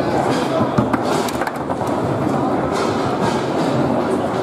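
Foosball table in play: several sharp clacks of the ball and rods striking, bunched about a second in, over the steady murmur of a crowded hall.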